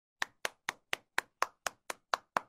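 A steady series of short, sharp clicks or taps, about four a second, starting a moment in.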